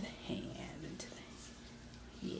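A woman's soft voice saying a couple of words, then quiet room tone with a faint click about a second in.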